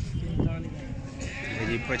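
A goat bleating, a quavering call in the second half.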